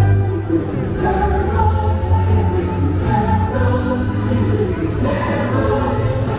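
Christmas parade music over the parade sound system: voices singing in chorus over an orchestral backing with a steady bass.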